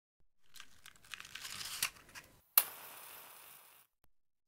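Rustling and small clicks of a matchbox being handled, then a match struck sharply about two and a half seconds in, flaring with a hiss that fades and dies away after about a second.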